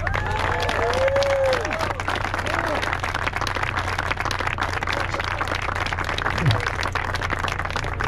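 A crowd applauding steadily, with a few voices calling out in the first couple of seconds.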